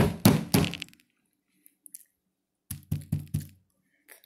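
A quick run of about five knocks on something hard, then, near the end, a second run of four or five more.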